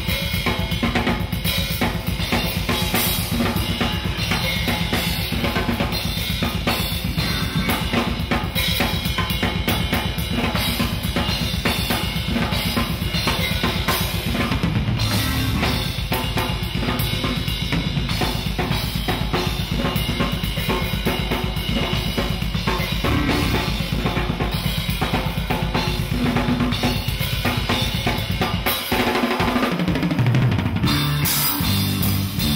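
A drum kit played hard in a dense, fast pattern of bass drum, snare and rimshots, with cymbals; the low end drops out briefly near the end.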